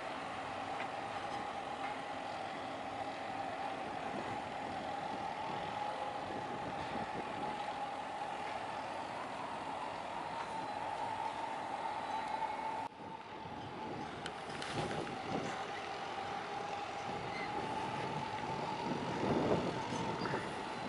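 A steady machine whine holds one pitch over a wash of outdoor noise. The hiss drops suddenly about two-thirds of the way through, and low rumbles swell briefly twice in the later part, the last near the end.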